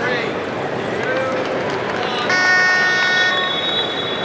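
Arena crowd noise with spectators' shouted voices. About two seconds in, a horn-like chord sounds for about a second, and a long, steady, high whistle-like tone follows it and is still sounding at the end.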